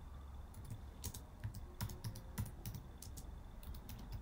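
Typing on a computer keyboard: about a dozen key clicks at an uneven pace as a short phrase is typed.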